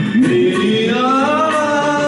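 A man singing one long held note into a handheld microphone over a karaoke backing track. The note slides up over about the first second and a half, then eases down.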